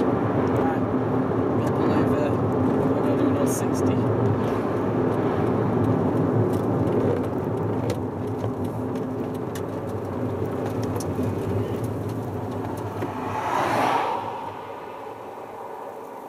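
Inside the cabin of a 2000 Toyota Yaris under way, its 1.3 VVT-i four-cylinder engine and road noise make a steady drone with a held hum. The noise eases after about eight seconds, and near the end a brief whoosh swells and fades before it drops quieter.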